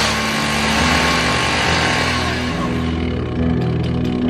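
Two-stroke chainsaw running at high speed while cutting brush, its hissing cutting noise dying away after about two and a half seconds as the engine settles to a steady lower note.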